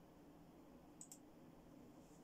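Near silence with a low steady room hum, broken about a second in by two faint clicks in quick succession from the computer being operated, as the slideshow is started.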